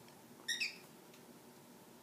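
A single short, high clink about half a second in as interlocked metal forks are nudged into place on the rim of a drinking glass. Otherwise only faint background.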